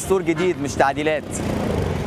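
Street traffic with a motor vehicle engine running close by, loudest in the second half once the talking breaks off.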